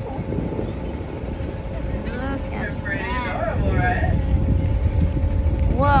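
Tour boat's engine running with a steady low rumble and a faint constant hum, with wind on the microphone.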